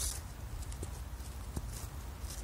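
Sneaker soles shifting and scuffing on a gritty curb edge strewn with gravel and dry leaves: a scrape at the start, then a few small clicks, over a low steady rumble.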